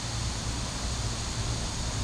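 Steady background noise with a low, even hum underneath.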